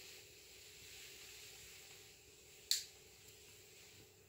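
Faint steady hiss and low hum, with one sharp click a little under three seconds in.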